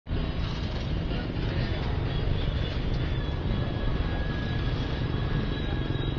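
Outdoor market and street background noise with wind rumbling on the microphone, steady throughout, with voices faintly in the mix.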